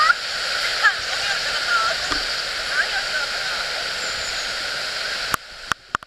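Steady rushing of a shallow, rocky river, with faint voices over it. The sound cuts off suddenly about five seconds in, followed by a couple of clicks.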